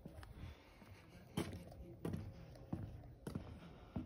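Faint footsteps on weathered wooden deck boards, a few evenly spaced knocks about two thirds of a second apart.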